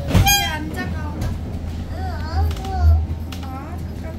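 Children's high voices: a short, sharp shriek about a quarter second in, then high, rising-and-falling calls from about two seconds in, over the steady low hum inside an electric city bus.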